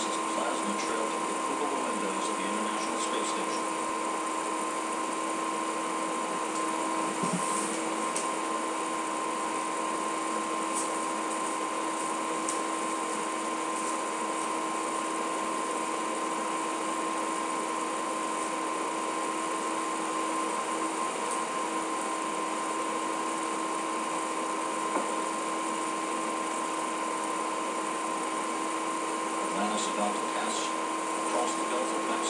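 Steady hiss of an open communications audio feed with no one talking, carrying two constant electrical tones, one low and one higher.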